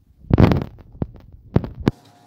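Knocks and handling noise: a loud rough thump about half a second in, then a few sharp clicks, of the kind a hand-held recording phone picks up as it is moved about.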